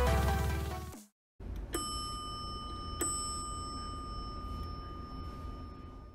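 Elevator hall lantern chime striking twice about a second and a half apart, the second note lower and ringing on for a few seconds, signalling the car arriving at the floor. The tail of electronic music fades out at the start, and a low steady room hum runs underneath.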